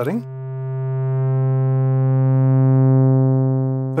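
Moog Mother-32 sawtooth oscillator holding one steady low note through a Rossum Evolution transistor-ladder low-pass filter, switched to its 6-pole setting with the Species overdrive turned up. The note swells slightly louder while its highest overtones fade away in the second half.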